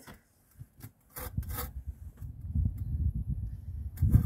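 Rough rubbing and scraping of a precast concrete step being nudged across its bed into level, with a few short scrapes about a second in and a low, uneven grinding after that.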